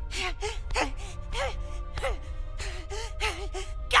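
A cartoon boy's voice in a rapid series of tearful, strained gasps and short sobbing grunts, repeated about every half second, as he works on another boy's chest trying to resuscitate him. Soft dramatic music runs underneath.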